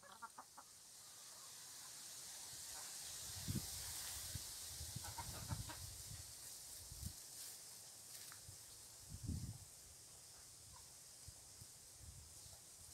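Chickens clucking in short, soft notes, a burst at the start and more around five seconds in, over a steady faint hiss. A few dull low thumps come between them, the loudest about three and a half and nine seconds in.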